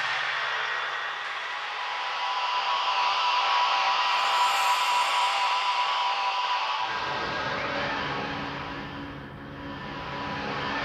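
Opening of a techno DJ mix: an atmospheric intro of hissing noise wash and held tones, without a beat. A low rumble comes in about seven seconds in, and the sound thins briefly near the end.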